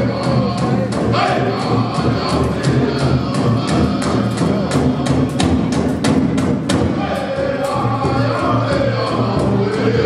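A powwow drum group playing a contest song: a steady, evenly spaced beat on a large shared drum under group singing.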